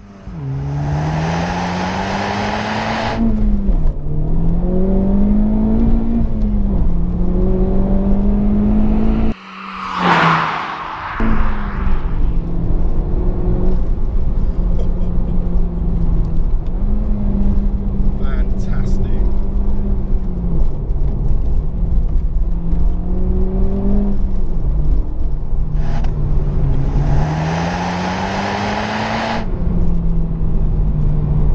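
Honda Civic Type R FK8's 2.0-litre turbocharged four-cylinder engine driven hard through the gears, its pitch climbing under acceleration and dropping at each gear change. About nine seconds in the engine note briefly breaks off and a whoosh rises and falls.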